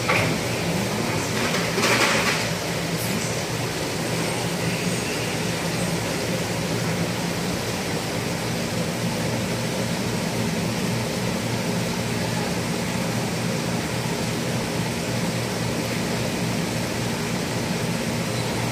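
Steady low hum and constant hiss of aquarium pumps, filters and ventilation running in a fish shop full of saltwater tanks, with a brief louder rustle about two seconds in.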